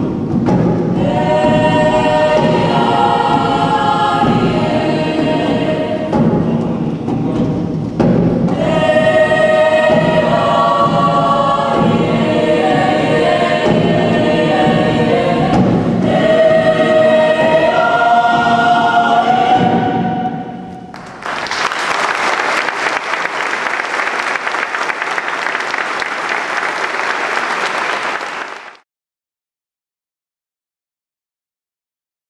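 A mixed youth choir singing a Māori song in several parts, ending about twenty seconds in. Audience applause follows for about eight seconds and is cut off abruptly.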